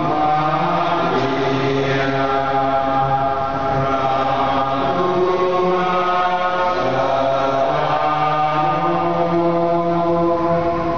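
Closing hymn sung in church: slow singing in long held notes that move up and down in steps.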